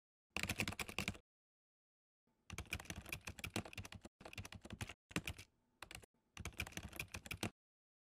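Computer keyboard typing: five bursts of rapid key clicks with short silent pauses between them, a typing sound effect laid over text being written out.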